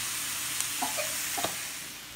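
Vegetables sizzling in a hot wok while being stirred with a spatula, with a few short clicks and scrapes around the middle.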